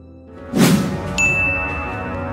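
Dramatic sound-design stinger over dark background score: a swelling whoosh into a loud hit about half a second in, then a sudden high, steady ringing tone that holds at one pitch.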